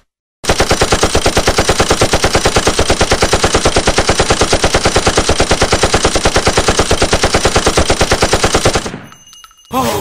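A fast, perfectly even rattle of sharp pulses, about ten a second, starting about half a second in and stopping suddenly about a second before the end.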